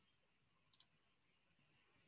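Near silence, with a single faint computer-mouse click a little under a second in.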